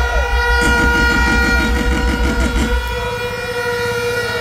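A horn held on one steady high note, with a fast low pulsing underneath that stops about three seconds in.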